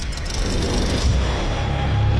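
Title-sequence sound effect: a loud low rumble with rapid faint ticking that dies away in the first second, and the deep rumble swelling towards the end.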